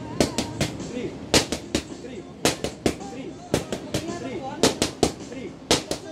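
Boxing gloves smacking focus mitts in fast combinations: sharp slaps in quick runs of about three, a new combination roughly every second.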